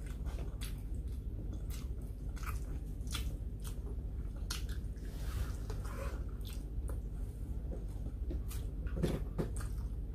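Close-up chewing and biting mouth sounds of a person eating rice and sautéed spicy eggplant, with short clicks scattered throughout.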